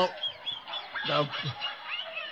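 A man's short honk-like laugh about a second in, falling in pitch.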